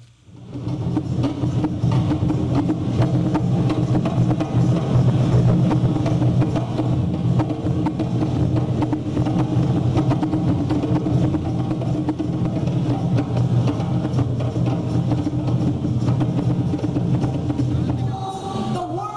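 An ensemble of djembe-style rope-tuned hand drums playing a fast, dense rhythm together. It fades in within the first half second and then runs at a steady level.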